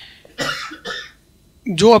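Two short coughs close to a handheld microphone, about half a second apart, followed by a brief quiet before the man's voice resumes near the end.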